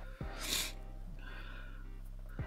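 Faint steady background music with a low hum, and one quick sniff of breath through the nose about half a second in.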